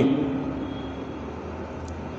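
Steady low background hum, like distant traffic or an engine, in a pause between words; the tail of the last word dies away at the start.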